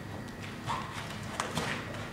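A few sharp knocks and scrapes on a carpeted floor from a broom being tapped and swept toward a dog.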